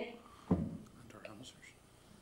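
Faint, brief human voice about half a second in, trailing off into low room tone.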